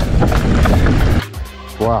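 Mountain bike riding noise on a dry dirt trail, wind rushing over the handlebar camera's microphone and tyres rolling, cutting off suddenly about a second in. Quieter background music follows, with a man's "Wow" near the end.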